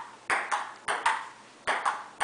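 Ping-pong ball being hit back and forth in a table tennis rally: about four sharp, ringing clicks of the celluloid-type ball striking paddle and table, unevenly spaced.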